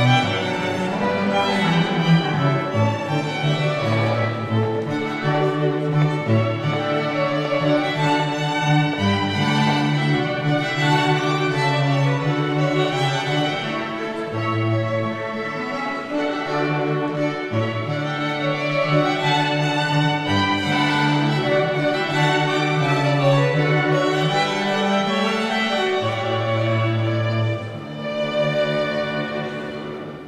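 Classical music on bowed strings: a violin melody over held low notes.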